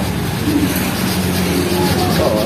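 A steady low mechanical hum, continuous and even.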